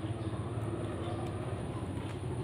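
A steady low background hum with a faint held tone, with no distinct events.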